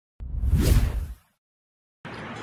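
A whoosh transition sound effect with a deep rumble under it, swelling and fading over about a second.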